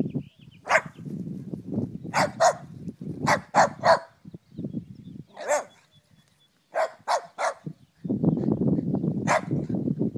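Jack Russell terrier barking: about a dozen short, sharp barks, some in quick pairs and runs of three. A low rumbling noise fills the gaps near the start and again from about eight seconds in.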